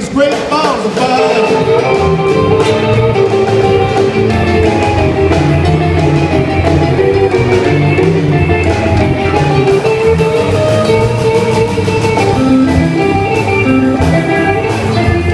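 A live rock-and-roll band plays an instrumental passage with no vocals: upright double bass, drum kit and hollow-body electric guitar, the guitar carrying the melody.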